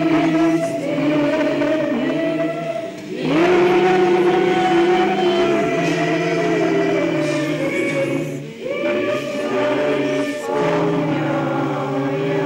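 Orthodox church choir singing liturgical chant, several voices holding sustained chords in long phrases that break off briefly about three seconds in and again about eight and a half seconds in.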